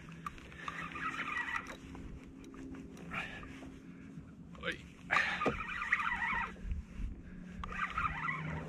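Fishing reel working under the load of a hooked fish, in two grainy bursts of about a second each, one near the start and one past the middle, with a couple of sharp clicks, over a steady low hum.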